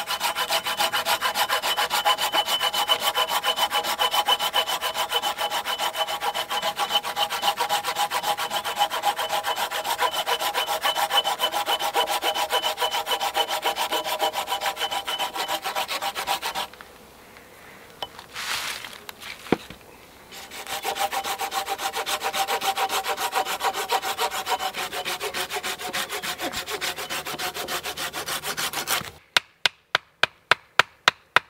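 Hand saw cutting through a log in quick, even strokes, the blade ringing, with a pause of a few seconds in the middle before the sawing resumes. Right at the end the sawing stops abruptly and a few sharp knocks start.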